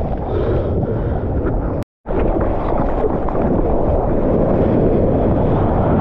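Water rushing and splashing against an action camera's waterproof housing, with wind buffeting the microphone into a heavy rumble, as a surfboard pushes through whitewater and onto a wave. The sound cuts out completely for a moment about two seconds in.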